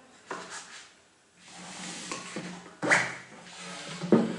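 MDF router jig being shifted on the bench top and pressed against the bench dogs: wood rubbing on wood, with a short knock just after the start and a sharper knock about three seconds in.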